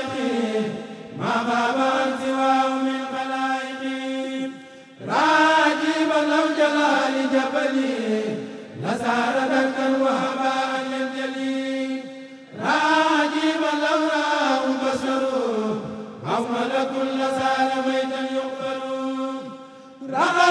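A kurel of men chanting a Mouride khassida (a Sufi religious poem in Arabic) together, unaccompanied, with long held, drawn-out notes. The chant comes in phrases of about four seconds, each ending in a short break before the next begins.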